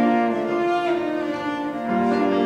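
Cello playing long held notes with piano accompaniment, moving to a new note near the end.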